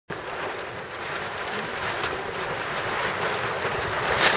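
Wind buffeting the microphone over choppy water, a steady rushing noise with water lapping.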